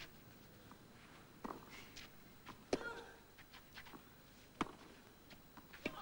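Tennis rally: a ball struck back and forth with rackets, four sharp hits between about one and two seconds apart, heard faintly over a quiet stadium.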